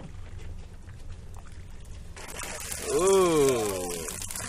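Water pouring and dripping off a wire fish trap as it is hauled up out of the sea, starting about halfway through. Near the end a voice lets out one drawn-out exclamation that rises and falls in pitch.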